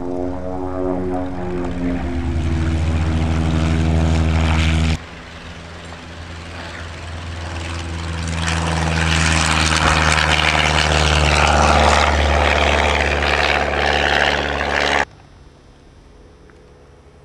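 Single-engine piston light aircraft at full take-off power, its engine note rising as it accelerates. After a sudden cut about five seconds in, a second propeller aircraft grows louder as it passes close by. An abrupt cut near the end leaves a much quieter, distant engine drone.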